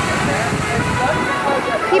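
A large tipping water bucket dumping its load, the water pouring down and splashing onto the deck in a steady rush.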